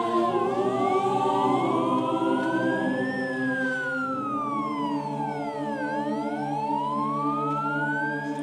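A siren wailing, its pitch sweeping slowly up and down in cycles of about five seconds, over a choir holding sustained chords.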